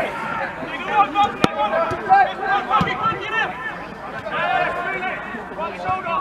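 Several voices of footballers calling out and talking over one another during play, with background chatter. Two sharp knocks come about a second and a half in and again near three seconds.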